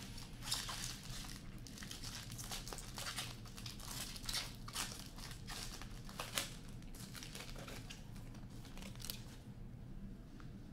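Plastic hockey card packaging being crinkled and torn open, a run of crackling with several sharp rips, stopping shortly before the end.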